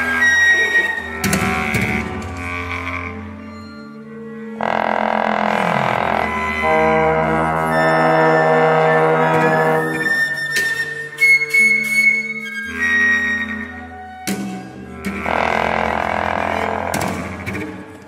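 Contemporary chamber music for flute, clarinet, bass trombone, viola and cello. Bass trombone and bowed cello sustain long low notes under layered held tones, in blocks that break off and re-enter abruptly, with a few sharp attacks.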